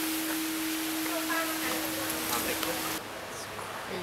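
Large hanging metal temple bell ringing on after a strike, one steady hum that cuts off suddenly about three seconds in.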